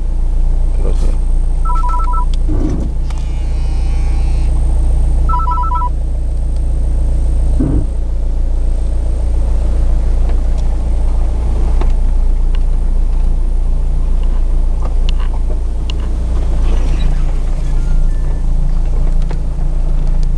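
Steady engine and road rumble heard inside a moving car's cabin. Two short two-note electronic beeps sound about two seconds in and again about five and a half seconds in.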